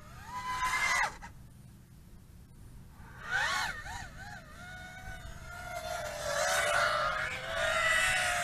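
HGLRC Sector 5 V3 FPV quadcopter with 1900 kV brushless motors whining in flight, its pitch sweeping up and down with the throttle. The whine grows louder over the last few seconds as the quad flies back close by.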